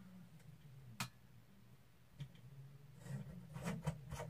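Quiet room tone with one sharp click about a second in, a weaker click a little after two seconds, and a cluster of small clicks and handling noise near the end, as a party light is switched off or unplugged.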